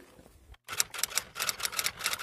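Typewriter keystroke sound effect: a quick run of sharp key clacks, about eight a second, starting about half a second in.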